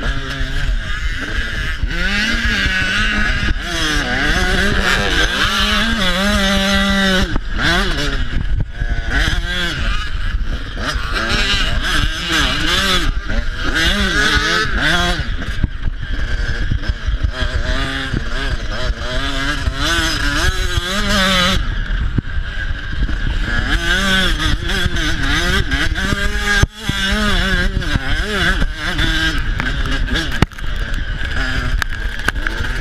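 Dirt bike engine revving, its pitch rising and falling again and again as the bike accelerates along the track. The loudness dips briefly near the end.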